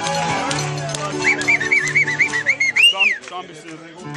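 Mariachi band playing, accordion and guitars over a steady bass line. About a second in, a high warbling whistle of quick rise-and-fall notes rides over the music for nearly two seconds, ending in one longer swoop, and the music thins out near the end.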